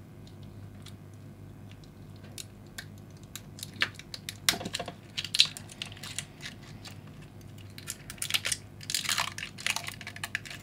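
Thin heat-shrink plastic film crinkling and tearing as it is picked at and peeled off a small toy car, in irregular crackly bursts that start a few seconds in and grow busier toward the end.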